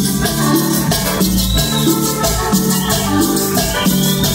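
A live band playing an instrumental passage with no vocals: electric bass, drum kit and keyboard, with hand percussion keeping a steady shaken rhythm on top.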